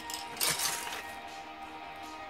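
A short clatter of loose plastic Lego pieces being handled and dropped, about half a second in, over quiet background music with held tones.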